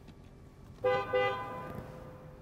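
Mercedes car horn sounding two short toots about a second in, the second note fading away.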